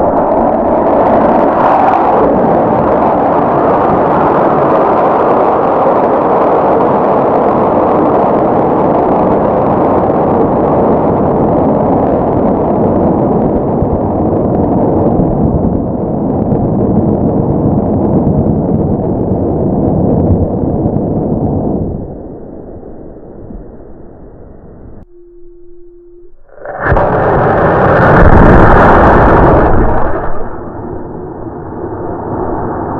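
Model rocket flight heard through the rocket's onboard camera: a loud burst as the motor fires in the first two seconds, then steady loud air rushing for about twenty seconds before it drops away. A short steady beep follows, then another model rocket motor firing loudly near the end.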